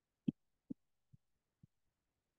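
Four faint clicks from computer controls about half a second apart, the first the loudest and each one after softer, as the drawing view is zoomed out.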